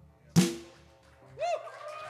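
A single loud drum-kit hit that rings away over about half a second, closing the song. About a second and a half in, a short whoop rises and falls, and applause starts near the end.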